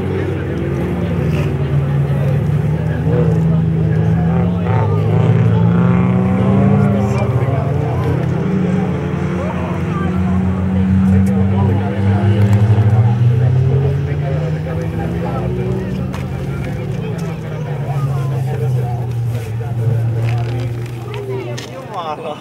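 Engines of several folkrace cars racing on the circuit, their revs rising and falling and overlapping as the cars accelerate and lift off.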